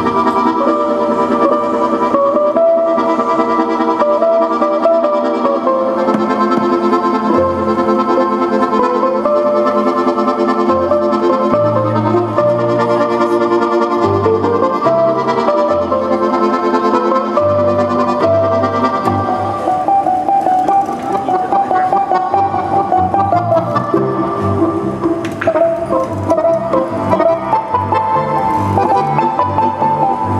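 Balalaika, accordion and contrabass balalaika playing a Russian folk tune together: a plucked balalaika melody over accordion chords, with deep plucked bass-balalaika notes coming in about seven seconds in.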